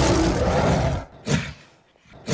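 Logo sound effect: a loud, noisy roar-like swell lasting about a second, then a short sharp burst a little later.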